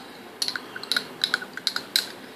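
Metal spoon scraping out a small glass, clinking against the glass in a quick run of light, ringing clicks.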